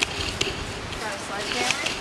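Faint voices over steady outdoor background noise, with two light knocks in the first half second.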